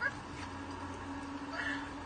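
Steady drone inside a moving car's cabin, with two brief faint higher vocal sounds, one about half a second in and one near the end.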